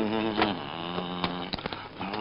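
A man's long, drawn-out groan, held on one wavering pitch and tailing off about one and a half seconds in, with a few light knocks.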